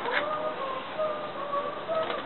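Small terrier whining in a string of about five short, high whimpers, each held briefly and sliding a little in pitch.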